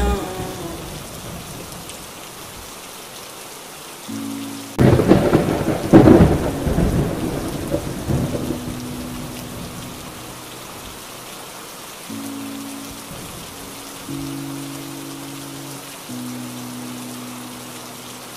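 Steady rain with a loud clap of thunder about five seconds in that rumbles and fades over the next few seconds. A few soft, low held notes sound beneath the rain.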